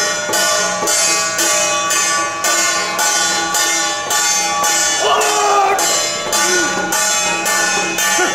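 Traditional temple procession music: metal percussion striking a steady beat about twice a second under held melody tones. A voice calls out briefly about five seconds in.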